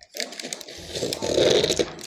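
Plastic tray of small glass injection vials being lifted and handled, the vials and packaging making a rapid clicking rattle.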